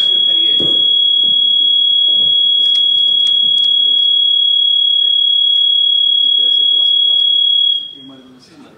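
Public-address microphone feedback: one loud, unbroken high-pitched squeal at a steady pitch, dying away just before the end.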